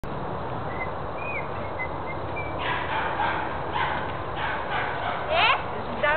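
A person imitating the call of a Eurasian bittern, a run of short yaps like a small dog, ending in a louder yelp that rises and falls just before the end. Faint bird chirps come in the first two seconds.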